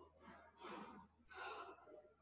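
Near silence with a couple of faint breaths from the woman narrating, about half a second in and again about a second and a half in.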